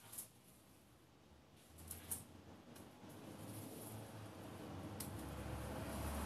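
Small scissors snipping basil flower stems: a few faint, sharp snips, two close together about two seconds in and another near the end, with a low background rumble growing in the second half.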